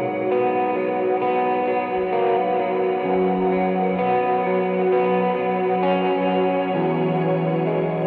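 Post-rock band playing live: slow, sustained chords on echo-laden electric guitar over a held low note. The low note changes about three seconds in and again near the end.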